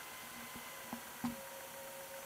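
Two short sharp clicks about a third of a second apart, a computer mouse being clicked, over a steady low hiss.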